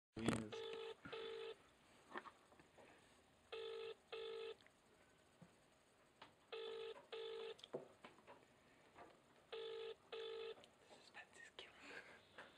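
British telephone ringing tone heard down the line: four double rings, each a pair of short buzzing tones, repeating about every three seconds while the called phone goes unanswered. A sharp click at the very start.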